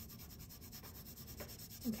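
Colored pencil shading on paper: faint scratchy rubbing of the lead going back and forth under light pressure while blending a very light value. A voice starts right at the end.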